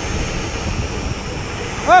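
Steady wind rush on the microphone and tyre noise from a mountain bike coasting fast down an asphalt road.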